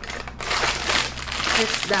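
Disposable plastic piping bag crinkling as hands squeeze and press it down to push the air out of the mashed-potato filling, starting about half a second in.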